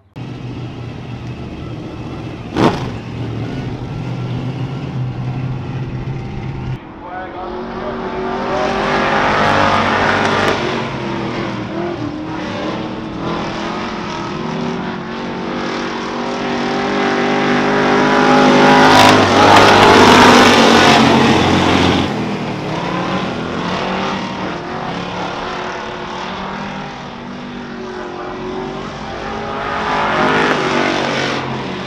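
Pack of hobby stock race cars running around a dirt oval, engines rising and falling as they circle, loudest as the field passes close about twenty seconds in. A single sharp crack sounds about three seconds in.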